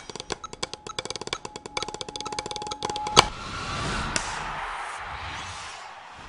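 Closing theme music built on fast drum strokes, with a steady tone underneath. About three seconds in comes one loud hit, followed by a long noisy wash that slowly fades.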